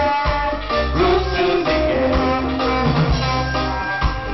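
Live reggae band playing, with a deep pulsing bass line and guitar.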